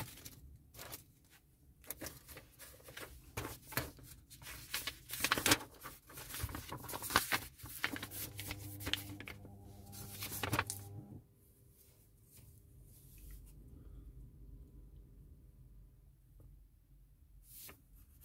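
Plastic model-kit sprues and small parts being handled: many light clicks, rattles and rustles for the first ten seconds or so. This gives way to a quieter stretch with a faint steady hum, with a few more clicks near the end.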